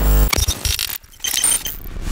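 Sound-design effects of an animated title sequence: a whoosh that lands on a hard hit with a deep bass thud at the start, then after a brief drop about a second in, a second choppy, glitchy whoosh with a few thin high beeps.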